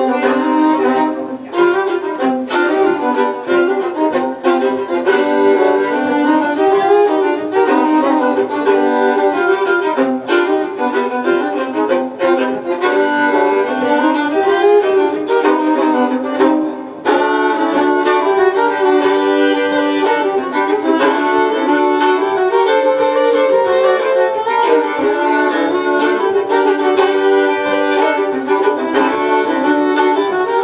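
Two fiddles playing a folk tune together as a live duet, with a brief break in the music a little past halfway.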